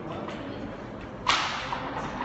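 A single sharp crack, like a smack or slap, about a second and a quarter in, dying away over about half a second against a steady background hiss.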